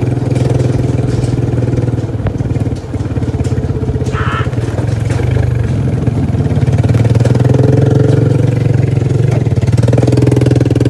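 All-terrain vehicle engine running steadily while towing a boat trailer, the note rising a little about seven seconds in. A brief high sound cuts in about four seconds in.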